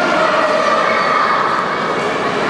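Crowd noise in a large, echoing sports hall: many overlapping voices of spectators and coaches shouting and calling out, at a steady level.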